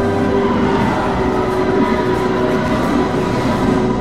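Film trailer soundtrack: a loud, dense swell of sustained orchestral music over rumbling sound effects, which breaks off at the end as the picture cuts to black.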